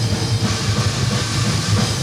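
Live heavy metal band playing: distorted electric guitar over drum kit and bass, dense and continuous.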